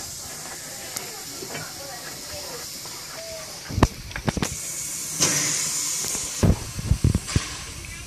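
Steam locomotive letting off a burst of steam, a hiss lasting about a second from about five seconds in, between a few sharp knocks before and after. Faint voices sound in the background.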